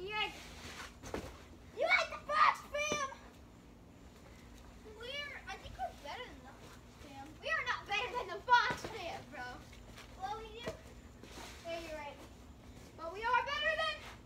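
Young children's voices shouting and calling out at play, in short high-pitched bursts with pauses between them.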